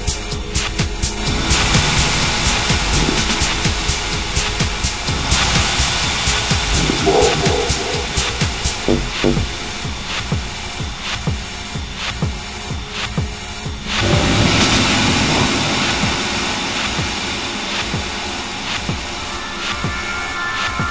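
Hard minimal techno from a continuous DJ mix: a steady electronic beat under noisy synth textures, with a wash of noise swelling in about a second and a half in, again around five seconds, and once more near fourteen seconds.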